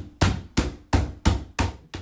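Mallet striking the top of a plastic cage section in a quick steady series of about six blows, roughly three a second. The blows tap its pegs down into the holes of the section below.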